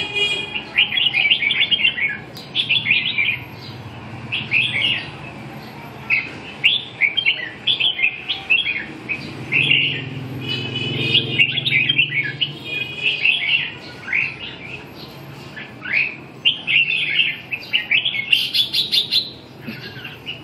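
Red-whiskered bulbuls singing in their cages, several birds giving short, rapid phrases of chirping notes in repeated bursts.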